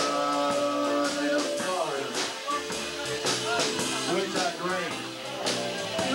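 Live band playing, with a long held note over the first second and a half, then guitar and a drum kit keeping a steady beat.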